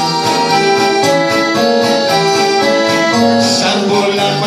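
Live laïko band playing, with an accordion holding long melody notes over a bouzouki and a guitar.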